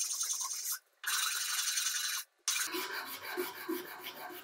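A flat hand file being pushed across a metal ring clamped in a vise. It makes three long rasping strokes of about a second each, with short pauses between them.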